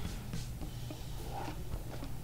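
Faint rustling and light taps of nylon paracord being handled and folded over a nylon backpack, over a low steady hum.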